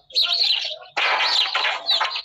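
Birds chirping over a loud, rough outdoor noise, heard through a phone video call's compressed audio.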